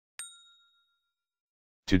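A single bright bell ding, the notification-bell sound effect of an animated subscribe-button overlay, struck near the start and ringing out within about half a second.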